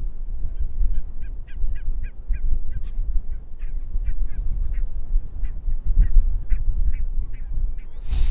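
Birds outdoors calling in a long series of short, sharp calls, about three or four a second, slowing and spacing out in the second half, over a steady low rumble.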